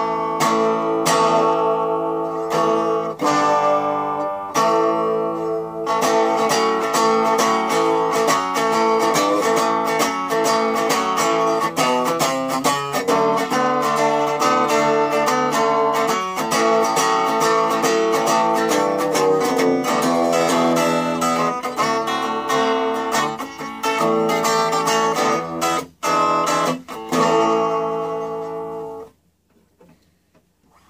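Electric guitar, a Gibson Les Paul Studio on its P90 bridge pickup, played through a Univox GA-107 10-watt practice amp with a 7-inch speaker and its EQ set flat. It opens with a few chords left to ring, then runs into busier chord-and-note playing for about twenty seconds, stopping about a second before the end.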